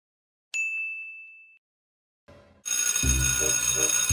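A single bell-like ding about half a second in, ringing on one clear tone and fading out within about a second. Then, a little past the middle, intro music with a steady beat starts.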